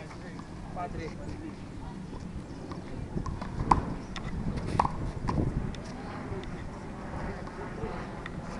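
Handball rally: a series of sharp smacks as a rubber ball is struck by hand and bounces off the concrete wall and court. The loudest smack comes a little under four seconds in and another about a second later.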